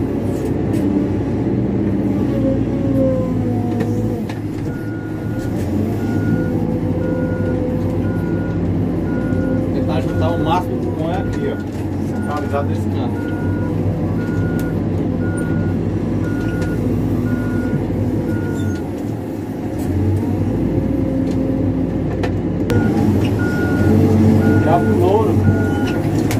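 CAT backhoe loader's diesel engine running under load, heard from inside the cab, its pitch rising and falling as the machine works. The reversing alarm beeps steadily in two long runs, from about five seconds in until near the end of the second third, and again near the end, as the machine backs up.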